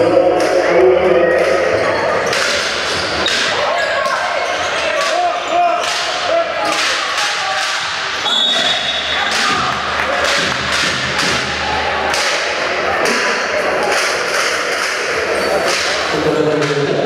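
Live indoor basketball game sounds: a basketball bouncing and other sharp knocks on a hardwood court amid the chatter of spectators and players' voices in the hall. A brief high squeal about halfway through.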